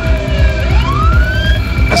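A police siren wailing, its pitch falling and then rising in a long glide, over a steady low rumble, played back through a hall's loudspeakers.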